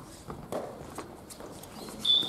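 Footsteps of badminton players on a wooden gym floor: a few light, irregular knocks and taps of shoes as they move about the court.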